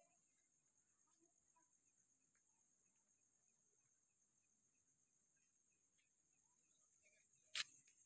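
Near silence: a faint, steady high-pitched trill, with faint rapid chirps in the first half and one sharp click near the end.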